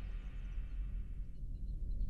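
Quiet background ambience: a steady low rumble with a few faint, short high chirps.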